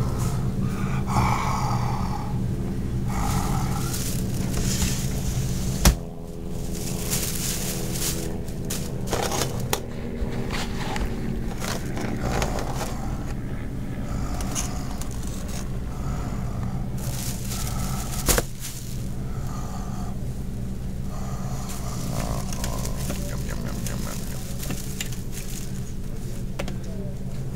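Steady low hum of shop ambience, with two sharp clacks about six seconds in and near the two-thirds mark: metal tongs knocking against a metal baking tray as empanadas are picked up.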